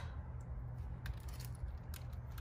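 Faint handling noises with a few light clicks: a metal connector plate being held against a steel frame tube and a small box of screws being handled, over a steady low hum.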